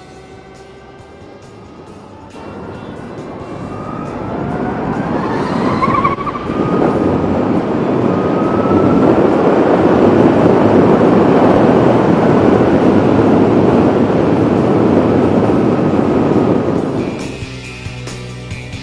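Harley-Davidson LiveWire electric motorcycle accelerating in sport mode: its motor whine rises in pitch over a few seconds from about two seconds in. Loud, steady wind rush on the camera then builds and holds until music takes over near the end.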